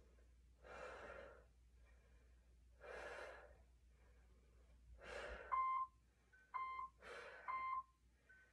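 A person breathing hard during exercise: several slow, audible exhales about two seconds apart. In the last few seconds an interval timer gives three short beeps about a second apart, counting down the end of the work interval; the beeps are the loudest sounds.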